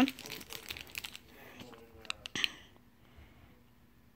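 Clear plastic bag around a stack of Pokémon cards crinkling as it is handled and turned over, with light crackles in the first second and a few sharp clicks about two seconds in.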